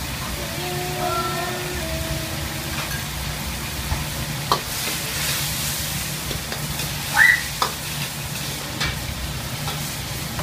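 Sauce of tomato, pepper and onion sizzling and bubbling in a wok over a gas burner. In the second half a spatula stirs it, scraping and knocking against the wok a few times, and the sizzle briefly grows louder.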